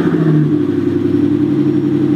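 Mercedes-Benz S65 AMG's 6.0-litre twin-turbo V12 running loud at a steady, unchanging pitch.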